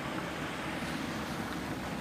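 Steady hiss of static on a police dispatch scanner recording, with no voice yet transmitting.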